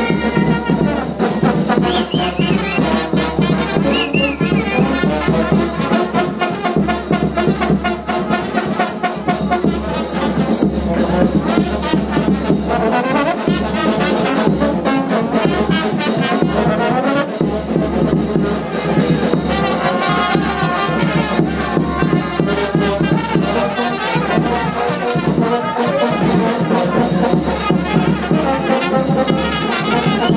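Live brass band playing loudly: trumpets and other horns over a steady bass-drum beat.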